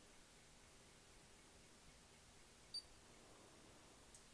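Near silence: faint room tone, with one very short, faint high-pitched beep about three-quarters of the way in.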